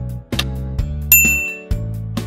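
A single bright bell-like ding about a second in, ringing briefly over children's background music with a steady bouncing bass line.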